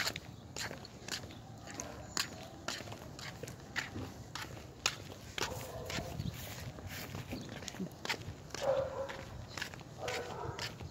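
Footsteps on a concrete sidewalk, a steady walking rhythm of about two to three steps a second.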